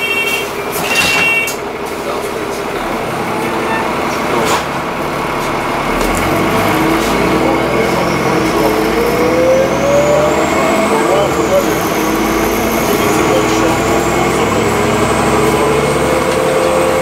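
Alexander Dennis Enviro400 double-decker bus heard from inside the lower deck, pulling along and accelerating: its engine and drivetrain climb in pitch, with a high whine rising from about six seconds in. A few short beeps sound in the first second.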